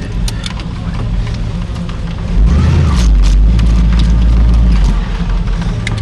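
A car engine running at idle, with a heavy low rumble that swells about two seconds in and holds for a few seconds. Scattered clicks and knocks sound over it.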